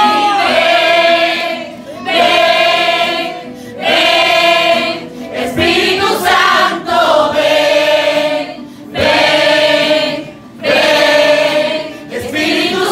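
A church congregation singing a worship song together, loud, in short sung phrases of about a second and a half, each followed by a brief pause.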